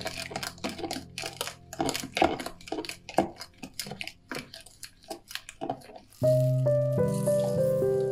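A metal teaspoon stirring liquid in a plastic jug, scraping and clicking irregularly against the sides and bottom. About six seconds in, background music with sustained notes comes in louder.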